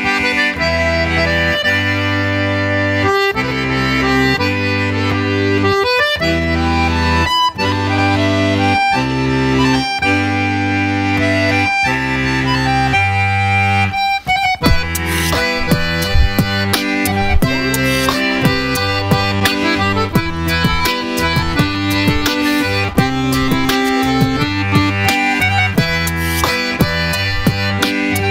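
Scandalli chromatic button accordion (bayan) playing a song, with a melody over a steady alternating bass-and-chord accompaniment. The playing breaks off briefly a little past the middle, then goes on with sharp percussive clicks added.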